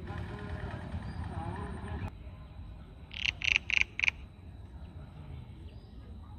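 A frog calling: four short croaks in quick succession about three seconds in, the loudest sound here. Before it, a low rumbling noise runs for about two seconds and cuts off suddenly.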